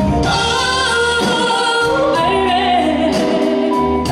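A woman singing live into a handheld microphone, holding long notes with vibrato, backed by a band with guitar and steady low bass notes.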